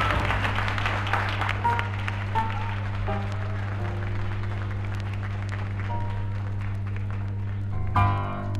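Applause on a live gospel record fading away, with a few soft, scattered keyboard notes and a steady low hum underneath; fuller music comes in right at the end.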